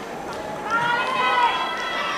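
Voices singing a Tongan song to accompany the dance. The singing is softer at first, then rises in long held notes that bend in pitch from under a second in.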